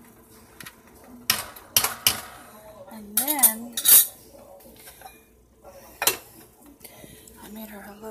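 Metal ladle clinking and scraping against a stainless steel pot as the beans are stirred: a run of sharp clinks, loudest around three to four seconds in, with a last one near six seconds.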